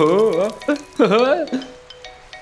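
A cartoon character's voice making wordless sounds in two short stretches, over light background music; the voice stops about three-quarters of the way in, leaving only the quiet music.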